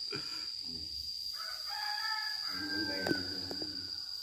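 A rooster crowing: one long call that begins about a second and a half in, holds its pitch and falls away near the end, with a sharp click as it ends.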